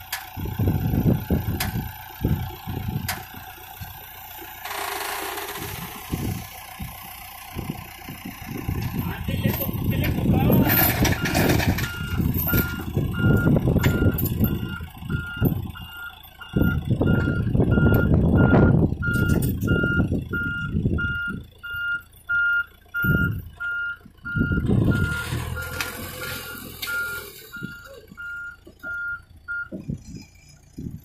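Backhoe loader's reverse alarm beeping steadily, about two beeps a second, starting about a third of the way in, over its diesel engine running under load. A chained mobile home is being dragged through sand.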